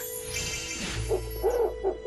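A swish of cloth, then cartoon birds cooing in a quick run of short hooting calls about halfway through.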